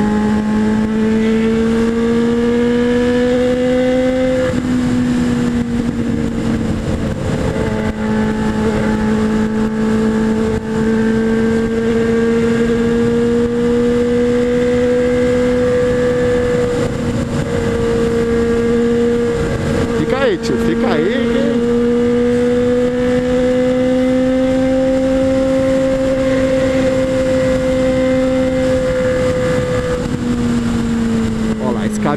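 Honda Hornet 600 inline-four engine running at high revs at highway speed, a steady high drone that climbs and eases slightly with the throttle, with wind rush over the helmet-mounted microphone.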